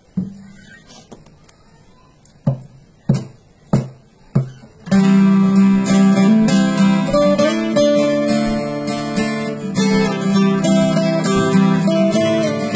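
Acoustic guitar: a single stroke, then four short strokes about 0.6 s apart as a count-in. From about five seconds in it settles into steady strummed playing of the song.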